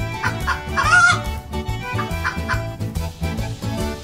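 Chickens clucking in short calls, with one longer, brighter call about a second in, over background music with a steady beat.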